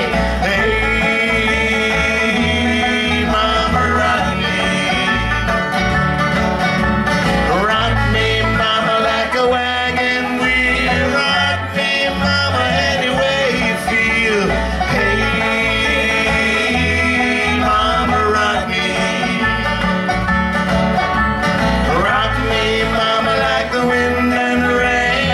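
Bluegrass band playing live: banjo picking over acoustic guitar and bass, the level steady throughout.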